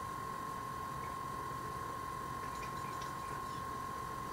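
A steady high-pitched whine over low room noise, with a few faint soft ticks in the second half.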